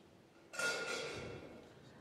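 A sharp clatter about half a second in, from something knocked at the kitchen cupboard on stage, with a ringing tail that fades over about a second and a half.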